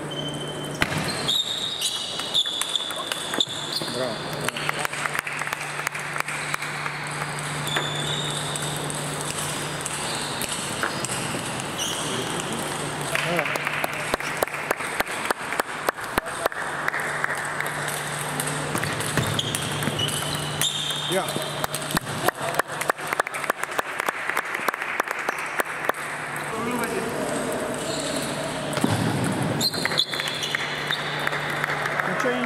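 Table tennis balls clicking off rackets and the table in rallies, a dense run of sharp clicks. Underneath are voices in a large hall and a steady low hum.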